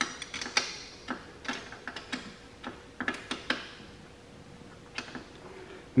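Half-inch wrench turning the engine support bolt on a tow-behind mower: a run of short, irregular clicks, a few a second, over about three and a half seconds, then a single click about five seconds in.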